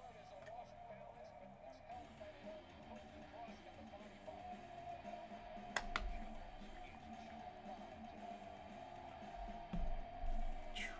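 Faint background speech and music, with one sharp click about six seconds in as a magnetic one-touch card holder snaps shut.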